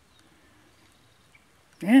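Near silence: faint outdoor room tone, with a man starting to speak near the end.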